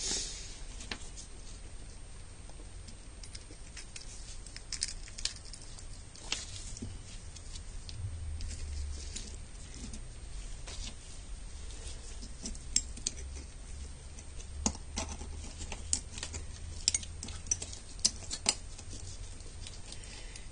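Small metal parts of a Citroën 2CV ignition points-and-condenser assembly being handled and fitted into their housing: scattered light clicks and taps, more frequent in the second half.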